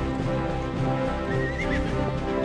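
Orchestral film score playing, with a horse whinnying briefly, a short wavering high call about a second and a half in.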